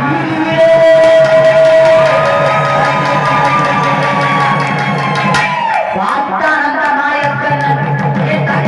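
Live Tamil devotional folk song: a woman singing through a microphone and PA, with a barrel drum beaten in a steady rhythm. A long held melodic note runs from about half a second in to past five seconds, then the melody moves on.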